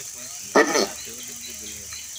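A man's voice amplified through a microphone, one short word about half a second in, then a pause with a faint, low pitched sound behind it.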